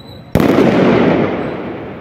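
A firework going off: a sudden loud bang about a third of a second in, followed by a rush of noise that fades away over about a second and a half.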